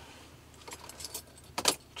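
A bunch of keys jingling as they are handled: a few light clinks, then a louder jingle about three quarters of the way through as the key is brought to the van's ignition.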